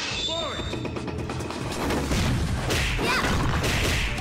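Animated fight-scene soundtrack: background music under repeated crashing and smashing impact effects, with a couple of brief shouts.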